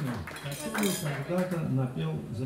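Cutlery and dishes clinking, a run of light clicks densest in the middle, under a man talking into a microphone.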